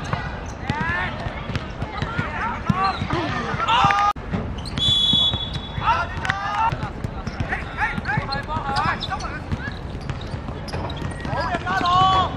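Players' shouts and calls across an outdoor football pitch over low thumps of play. About five seconds in, one short referee's whistle blast sounds, signalling the second-half kickoff.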